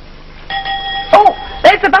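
The bus bell rings once, starting about half a second in: a single bright ding that rings on as a steady tone, signalling that it is time to leave.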